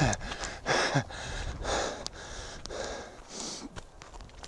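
A runner breathing hard while running uphill: quick, noisy breaths about once a second, the first two with a short voiced gasp.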